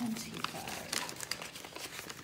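Paper banknotes being handled and slid into a paper envelope: a run of dry, crisp rustling and crinkling.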